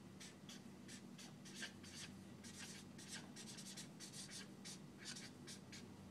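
Felt-tip marker writing on a whiteboard: many short, quick, irregular strokes, faint.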